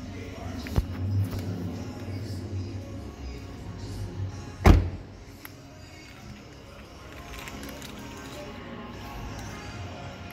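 The 2017 Audi R8's door shut with one heavy thump about halfway through, with a lighter click about a second in, over background music.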